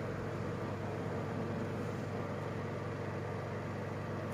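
Steady background hum with an even hiss, unchanging throughout: room tone.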